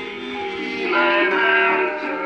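A song playing from a vinyl single on a record player, with a singer holding long notes over the band; it swells louder about halfway through.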